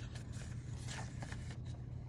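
Pages of a small paper guidebook being leafed through by hand: faint rustling with a few soft flicks.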